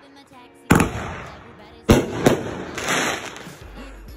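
Fireworks going off: two sharp, loud bangs about a second apart, each trailing off, with a smaller pop just after the second.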